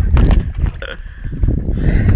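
Wind buffeting the microphone, with short wordless vocal sounds from a person in the first second.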